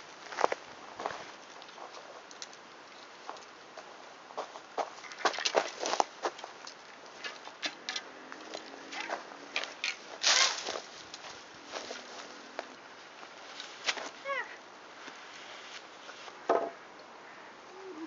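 Footsteps on a bark-chip path, with scattered clicks, knocks and rustles of wooden garden canes and netting being carried and handled.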